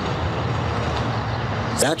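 Rover car driving towards the camera on the road: steady engine hum and tyre noise at a constant level.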